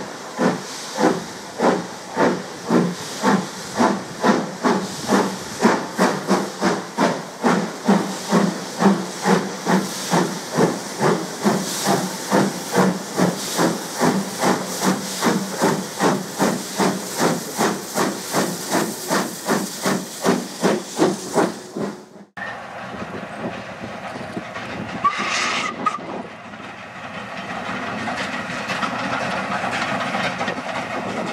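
Steam locomotive starting a train: regular exhaust beats, about two a second, with steam hissing. After about 22 seconds the sound cuts off suddenly to a train running, with one short steam whistle and the train growing louder near the end.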